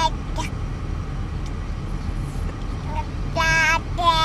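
Baby babbling in short high-pitched vocal sounds, a brief one just after the start and a longer one near the end, over the steady low rumble of a car cabin.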